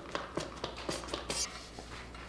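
Trigger spray bottle of glass cleaner squirting and clicking in a quick series of short bursts, the last and brightest about a second and a half in, followed by faint rubbing of a cloth over a metal lamp base.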